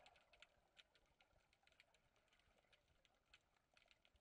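Near silence, with faint scattered clicks.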